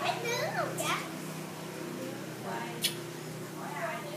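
Children's voices and chatter in a room, loudest in the first second and again faintly near the end, over a steady low hum, with one sharp click a little before three seconds in.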